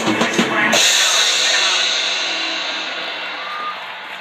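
Drum kit played along with the song, a few quick drum strokes ending in a cymbal crash under a second in that rings on and slowly fades.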